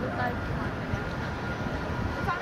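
Busy city street sounds: a steady low traffic rumble with faint chatter from people standing in line.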